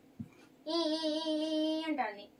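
A young child's voice holding one long, steady sung note for just over a second, starting about two-thirds of a second in. A soft thump comes shortly before it.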